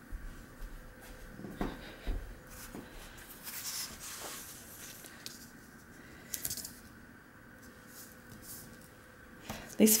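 Quiet handling sounds of tape and paper: tape pulled off a roll and pressed onto a paper square, with light rustles and small taps. The tape pulling is a short hissy stretch a few seconds in. A woman's voice starts right at the end.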